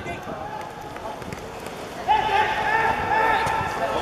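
Voices shouting during a football game, turning into a loud, drawn-out yell about two seconds in.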